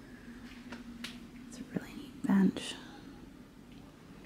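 A few faint light clicks of handling, then a woman says a short, drawn-out "And..." a little past two seconds in, over a quiet room with a low steady hum.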